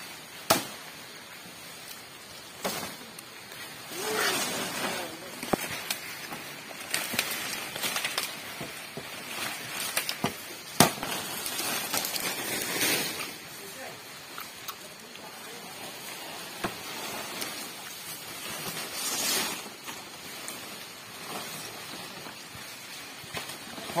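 Machete chops into toko palm leaf stalks, a few sharp separate strikes, between swells of dry rustling as the big fan-shaped fronds are pulled through the undergrowth and handled.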